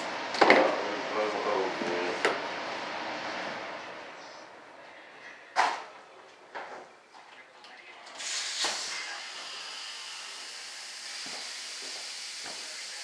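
A power tool sanding a hardwood trailing edge, heard as an even hiss that starts suddenly about eight seconds in and holds steady. Before it come a few sharp knocks of handling.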